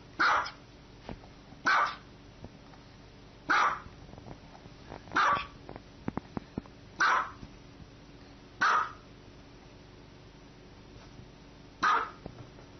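A small white fluffy dog barking: seven single barks spaced about a second and a half to two seconds apart, with a longer pause before the last one near the end.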